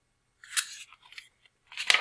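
A page of a large picture book being turned by hand: paper rustling about half a second in, then a sharp, louder swish as the page flips over near the end.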